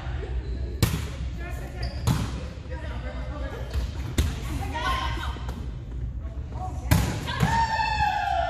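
A volleyball being struck back and forth in a rally in a large gym: about five sharp slaps, one every one to two seconds, the last two close together near the end as the ball goes to the floor. Players call out throughout, and near the end a long falling cry follows the dropped ball.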